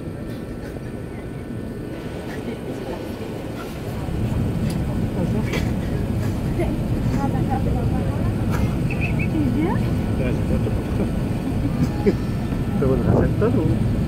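Airbus A380 cabin noise on approach: the steady roar of engines and airflow heard from inside the cabin, growing louder about four seconds in. Passengers' voices murmur underneath in the second half.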